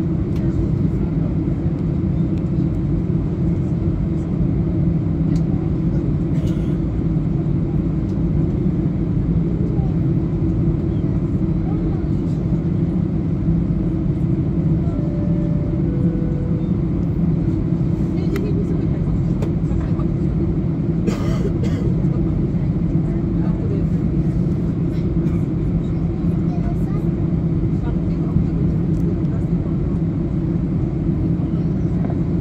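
Airbus A320-232's IAE V2500 turbofan engines at taxi power heard inside the cabin: a steady low rumble as the airliner taxis. Two brief faint tones, the second lower, sound about halfway through.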